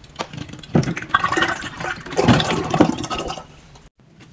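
Laundry liquid poured from a plastic bottle into a glass dispenser jar, gurgling and splashing unevenly as it fills. The pour tails off about three seconds in, and the sound cuts off sharply just before the end.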